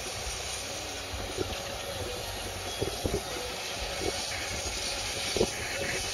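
A John Deere 4430's six-cylinder diesel and the Vermeer round baler it pulls, running steadily far off: an even hum and hiss with no change in engine speed.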